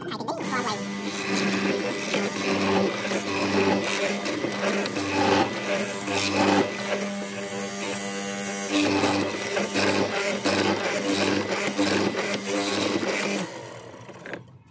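Benchtop hollow-chisel mortiser running, its motor spinning the auger inside the square chisel while it is plunged repeatedly into pine, swelling about once a second with each cut. The motor starts just after the beginning and shuts off shortly before the end.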